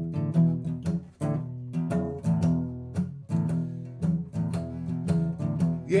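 Steel-string acoustic guitar strummed in a steady rhythm, about three strokes a second, playing the instrumental intro of an improvised blues. A singing voice comes in at the very end.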